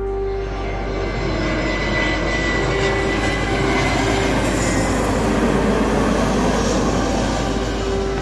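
Airbus A321ceo jet airliner passing low overhead on landing approach with its gear down. Its engine roar swells to a peak about five or six seconds in and then eases, with a thin high whine that drops slightly in pitch early on.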